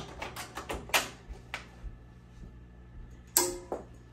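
Hooped cap being mounted on a Ricoma embroidery machine's cap driver: a quick series of sharp plastic-and-metal clicks and knocks in the first second and a half, then only a faint steady hum.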